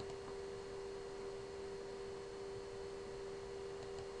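A steady electrical hum held at one mid pitch, over a faint hiss.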